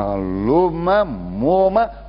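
A man's voice drawing out long syllables, the pitch rising and falling slowly, like a held, sing-song stretch of speech, until a short break near the end.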